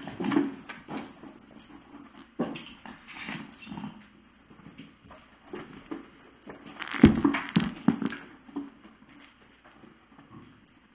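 Kittens playing: short runs of a rapid, high rattling sound with soft paw thumps. About seven seconds in there is a loud knock as kittens bump up against the camera.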